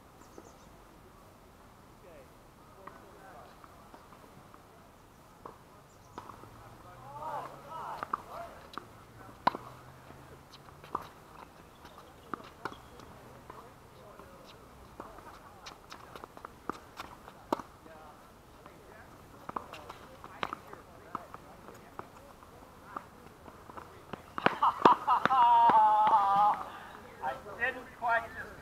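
Tennis rally: sharp racket-on-ball hits and ball bounces, scattered irregularly from about six seconds in to near the end. Near the end a person's voice, close and loud.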